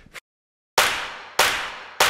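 A short gap of silence, then two sharp cinematic impact hits just over half a second apart, each with a long fading tail: the opening beats of a produced promo sting.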